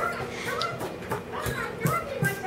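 A young girl's high voice vocalising without clear words, mumbling or humming in short bits at the start and again near the end, with a few light taps in between.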